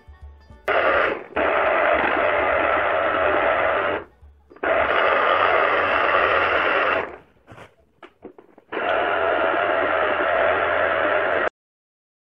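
Electric citrus juicer's motor running in three spells of two to three seconds each as orange halves are pressed onto its turning reamer, each spell cutting off abruptly when the pressure is released.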